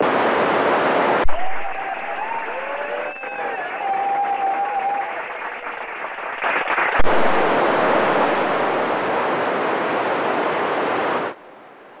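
FM amateur-radio transceiver's speaker hissing with receiver noise as the ISS downlink signal fades out, with faint wavering tones in the hiss for a few seconds and two sharp clicks. The hiss cuts off suddenly near the end as the squelch closes.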